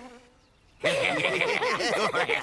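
Near silence for almost a second, then a dense buzzing of insects starts suddenly and carries on.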